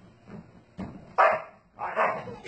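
Husky vocalizing in short, loud dog calls: one starts a little after a second in, and a second one begins near the end.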